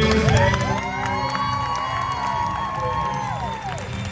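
Arena crowd cheering and whooping, with several long overlapping 'woo' calls, as the performance music cuts away about half a second in.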